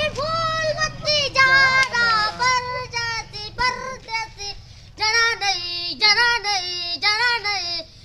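A young boy singing a sad song unaccompanied, in a high wavering voice with long held, bending notes. There is a short break about four seconds in before he carries on.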